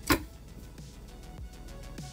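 A single sharp click of multimeter probe tips against a PC fan's wire connector, right at the start, over faint background music.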